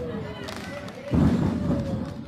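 Spectators shouting ringside at a lucha libre match, with a heavy thud of a body hitting the wrestling ring about a second in.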